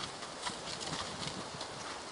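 Hoofbeats of a ridden paint horse moving over the dirt of a riding pen, faint and irregular over a steady outdoor hiss.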